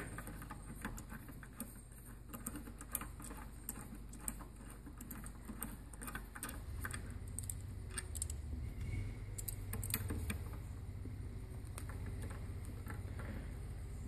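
Socket ratchet clicking and light metal tool handling as the 10 mm bolts are undone on a Bosch air brake regulator clamped in a vise. Faint, scattered clicks, busiest in the first few seconds and again about two-thirds of the way in.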